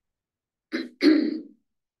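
A woman clearing her throat in two short sounds, the second louder, starting a little under a second in.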